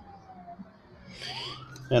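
A faint siren wailing, its pitch sliding slowly down and then rising again in the last second, with a brief rustle of a plastic parts bag in the middle.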